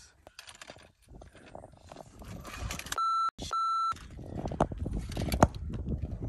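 Two short censor bleeps, one flat beep-tone each about a third of a second long, close together about three seconds in, laid over a swear word. Around them are irregular scraping and clattering of boots, hands and trekking poles on granite rock, growing louder in the second half.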